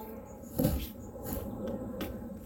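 A braided rope being pulled so a trucker's hitch slips loose, the rope rustling and sliding against the plastic kayak hull, with one sharp knock about half a second in.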